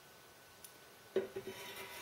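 Near silence with a soft click, then faint rubbing and scraping of a metal fork against the metal stove.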